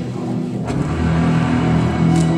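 Dark, sustained drone-like stage music with held low tones, joined about half a second in by a sudden rushing, roaring noise effect that swells and carries on.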